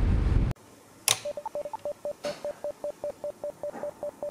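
Wind noise on the microphone cuts off half a second in. Then come two sharp clicks and a rapid run of short electronic beeps from a FrSky Taranis Q X7 radio transmitter, about five a second at one pitch, with a couple of higher beeps near the start.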